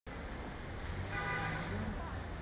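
Outdoor road-traffic ambience: a low steady rumble, with a faint held tone from about a second in that fades out shortly before the end.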